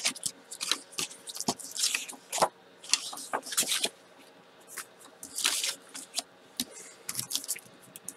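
Sheets of cardstock and patterned paper being handled and slid across the work surface: irregular short swishes and rustles with sharp little taps and clicks, quieter for a moment about halfway through.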